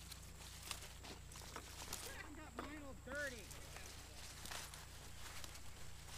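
Faint rustling and snapping of tomato plants as tomatoes are picked by hand, with a short faint voice from farther off partway through.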